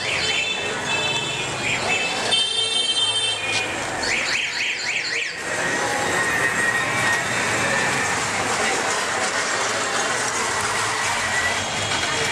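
Busy street traffic with electronic vehicle horns: a shrill, steady horn held for about a second a couple of seconds in, then a quick warbling series of beeps, after which the steady din of traffic goes on.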